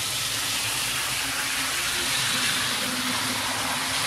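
HO scale model train, an Athearn Genesis EMD SD70M diesel locomotive at full throttle, running on sectional track: a steady hiss of motor and wheels with a faint low hum.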